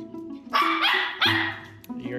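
Small dog barking excitedly, three quick high-pitched barks in a row, over light plucked background music.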